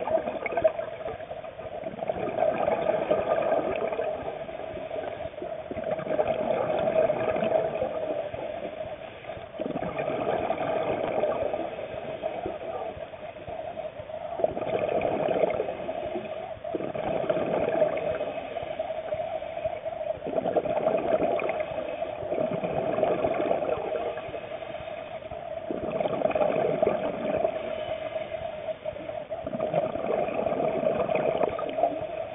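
Scuba diver breathing underwater through a regulator, with a rush of exhaled bubbles every three to four seconds. A steady hum runs underneath.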